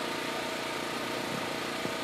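A steady mechanical hum, like a small engine running, with several unchanging tones and no sudden sounds.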